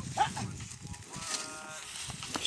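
Working ox team yoked to a plough; one of the cattle gives a faint, steady lowing call lasting about half a second, a little after a second in, after two short faint sounds near the start.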